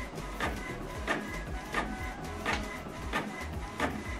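Canon PIXMA MG3600-series inkjet printer printing a page: the print head sweeps back and forth with a regular stroke about every 0.7 seconds, and a short whine comes between strokes as the sheet feeds out.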